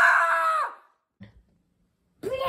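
A girl screaming in fright: one long, high-pitched cry held at a steady pitch that cuts off under a second in.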